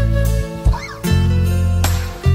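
Acoustic guitar playing a slow instrumental intro: low bass notes held under plucked chords, with a short high note that slides up and back down near the middle.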